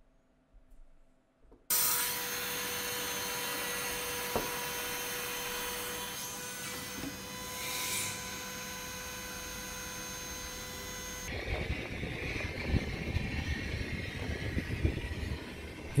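About two seconds in, a Boeing 737NG's hydraulic system cuts in suddenly with a steady hiss and whine holding two steady pitches, powering the main landing gear through a gear swing test. About eleven seconds in, the whine and hiss drop away and a lower, uneven rumble continues.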